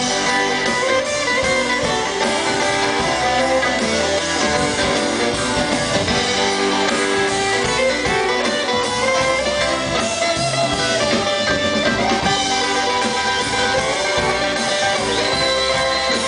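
Live bluegrass band playing an instrumental passage, with acoustic guitar prominent among the plucked strings.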